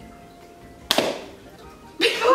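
A balloon wrapped in a wet, glue-soaked yarn shell bursting once, about a second in: a single sharp pop with a short ring-off.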